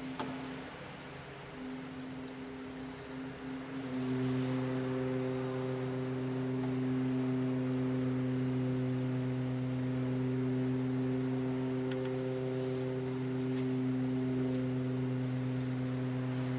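Rieger pipe organ holding one low note, faint at first, then sounding fuller and louder from about four seconds in and held steady. The loudness is set only by how deep the key is pressed: on this cone-valve windchest the key opens the pipe's wind gradually.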